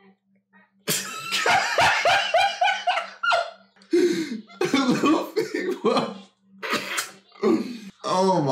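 Japanese anime dialogue, a character's voice strained and calling out, mixed with bursts of stifled laughter and breathy, cough-like snorts.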